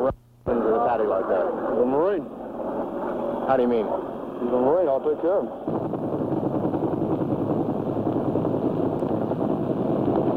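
Men's voices calling out in sharply rising and falling tones, after a brief gap at the start. About six seconds in they give way to a steady mechanical drone with a fast flutter.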